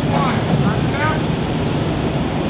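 Drum and bugle corps brass hornline (mellophones, baritones, euphoniums, tubas) holding a long unison concert F during a warmup, with voices talking over it.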